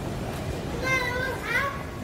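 A child's high voice calling out briefly about a second in, rising in pitch at the end, over a steady background hum of noise.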